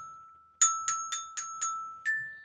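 Child's metallophone, metal bars struck with a plastic ball-headed mallet: a note rings away, then just over half a second in five quick strikes on the same bar, about four a second, each ringing on.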